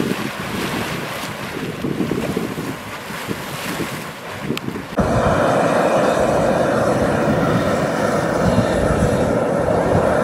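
Yellowstone hot springs boiling and steaming: an uneven, surging rush of churning water and steam, then, after a cut about halfway through, a steadier and louder rush from a vigorously boiling pool beside a steam vent. Wind on the microphone is mixed in.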